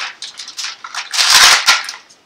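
Plastic bag of raw chicken leg quarters crinkling and rustling as it is handled, with scattered sharp clicks and a loud burst of crackling about a second in.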